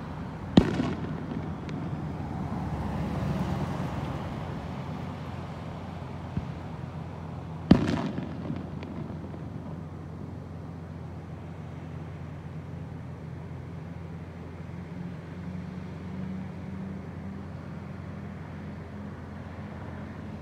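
Two sharp loud bangs, each followed by a short echo, about seven seconds apart, over a steady rumble of street traffic.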